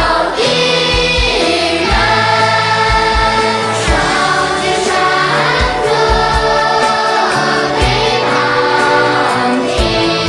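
A choir of mixed voices singing a song in praise of the Party and the motherland, over instrumental backing with a regular low beat.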